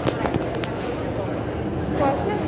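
A rolling hard-shell suitcase being moved across a tiled floor by someone walking: a handful of sharp clacks and knocks in the first half-second or so, over a murmur of voices.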